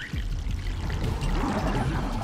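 Water pouring from a hose into an enclosed clear box, fed by a large inverted water-cooler bottle that gurgles as it drains. The bubbling grows stronger in the second half.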